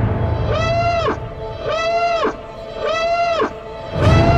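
A pitched, alarm-like whooping tone repeats three times, about once every 1.2 seconds. Each call swoops up, holds and drops away, over a low rumble in the first second.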